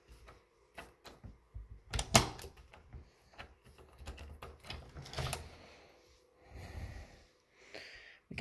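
A door being opened: the knob turning and the latch clicking, with a string of small clicks and knocks, the loudest about two seconds in.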